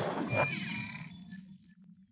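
Electronic logo-sting sound effect dying away, with a short falling tone about half a second in, fading out toward the end.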